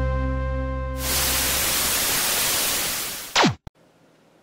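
Intro music ends on a held chord that fades out. It gives way to about two seconds of static hiss, which ends in a quick falling sweep and a click.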